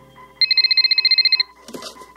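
A telephone ringing: one electronic ring about a second long, a rapid high warbling trill. A brief rustle follows near the end.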